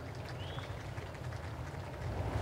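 Hushed outdoor golf-course ambience with a steady low rumble, and a single short rising bird chirp about half a second in.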